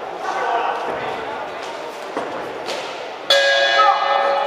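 Boxing ring bell struck about three seconds in, ringing on with many tones at once, sounding the end of the round. Before it, scattered dull thuds from the ring.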